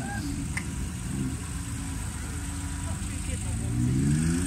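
Air-cooled flat-six engine of a 1989 Porsche 911 Speedster running at low revs as the car rolls slowly, a steady low engine note that grows a little louder near the end.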